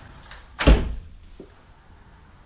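A door knocking shut with a single loud thud less than a second in, ringing out briefly.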